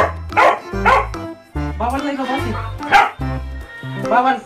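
Black-and-white askal (Filipino mixed-breed dog) barking: three loud barks in quick succession at the start and one more about three seconds in, over background music with a steady bass line.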